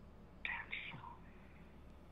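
A man whispering a word or two under his breath, starting about half a second in, over faint room tone with a steady low hum.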